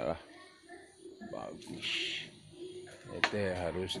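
Sheep bleating: a wavering call right at the start and a longer one from about three seconds in.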